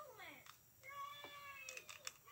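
A cat meowing twice: a short call falling in pitch, then a longer drawn-out meow about a second in. A few small plastic clicks of LEGO pieces sound near the end.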